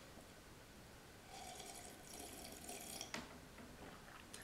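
A faint sip of hot coffee from a mug, a soft slurp lasting about two seconds that stops abruptly about three seconds in.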